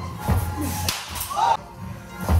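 A single sharp smack about a second in as a pitched baseball arrives at home plate, followed shortly by a short shout.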